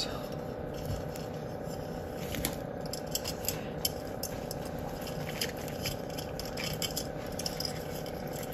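Bark potting mix crackling and clicking as fingers press it into a terracotta pot around an orchid's base, a scatter of small crunches over a steady low hum.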